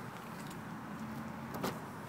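Faint steady low hum with one sharp click about a second and a half in, as the car's rear door is opened.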